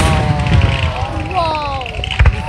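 An aerial firework shell bursts with a loud bang right at the start, followed by the low booming and crackle of more shells. Over it, spectators let out long calls that slowly fall in pitch.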